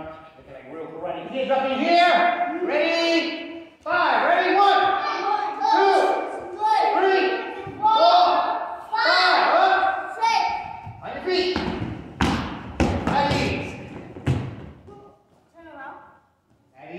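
A group of children calling out together about once a second, in time with push-ups. Then, about eleven seconds in, a quick run of thumps on the wooden floor.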